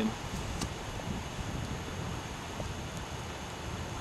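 Steady outdoor background noise with a low wind rumble on the microphone.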